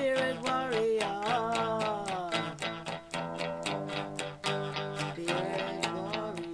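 Electric guitar strummed in a steady rhythm, about four strokes a second, under held chords, with a wavering melody line that slides downward over the first two seconds or so and returns near the end.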